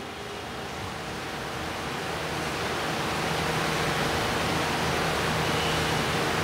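Steady, even hiss of room noise with a faint low hum, slowly growing louder.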